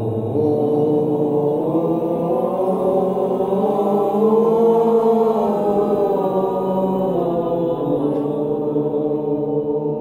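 A group of adult voices holding one sustained vowel together in unison as a vocal exercise, unbroken throughout, the pitch shifting slightly a few times.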